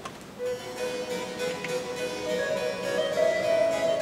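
Baroque chamber music beginning about half a second in: a harpsichord accompanies a melody line that holds long notes, stepping up in pitch partway through.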